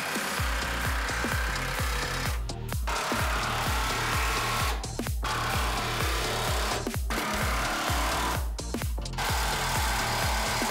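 Cordless power tool on a socket extension running bolts down on an air spring mount, in several runs broken by short pauses. Background music with a steady bass beat plays throughout.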